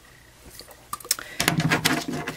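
Light rustling and a few small clicks from hands handling a roll of double-sided sticky strip tape and a paper cup, busier and louder in the second half.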